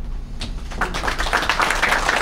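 Audience applauding, starting about half a second in and building quickly into a dense patter of claps.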